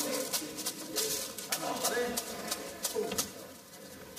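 Indistinct, low, wavering vocal sounds with scattered short clicks, growing fainter toward the end.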